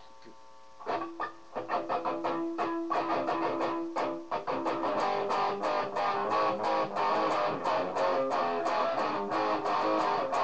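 Guitar played with a pick, starting about a second in with a rapid run of picked notes.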